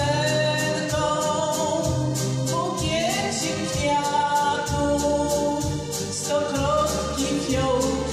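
A Polish patriotic song with a backing track: long held sung melody notes over a pulsing bass and a steady beat.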